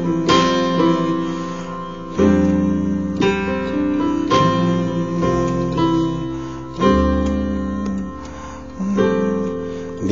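Slow chords played on a synthesizer keyboard, with a low bass note or octave under each. A new chord is struck about every two seconds and left to ring until the next.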